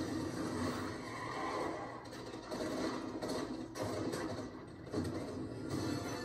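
Film trailer soundtrack playing from a TV in the room: a muffled low rumble with a few sharp hits, the music having dropped away.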